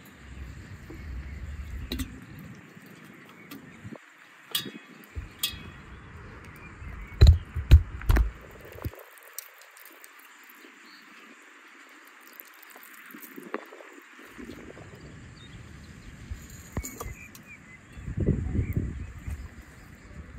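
Raw beef chunks being packed by hand into large glass jars: a few light glass clinks, then a quick cluster of dull thumps about seven to eight seconds in, the loudest sounds here, over a steady outdoor background.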